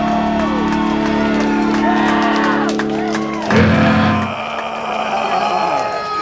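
A death metal band's sustained chord rings out, ending with a loud, low final hit about three and a half seconds in. Crowd shouts and whoops sound over it, and the crowd keeps cheering after the band stops.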